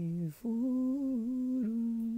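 A voice humming a slow tune in long held notes, stepping between pitches, with a short break for breath about a third of a second in.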